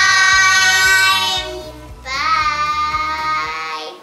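Children's voices calling out together in two long, high, drawn-out shouts, a short gap between them, over background music with a steady beat.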